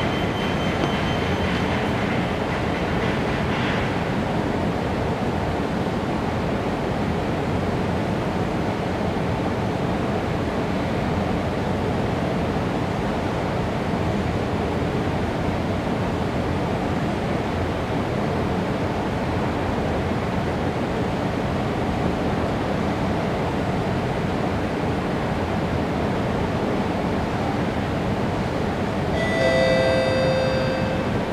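Steady rumble and hum of an underground MRT station platform behind platform screen doors, with a faint high whine fading out in the first few seconds. A chime of several tones sounds near the end, the lead-in to a station announcement.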